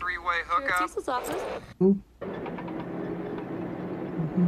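A voice speaking for about the first second, then a short thump and a brief drop-out. After that a steady low mechanical hum with two held tones runs on.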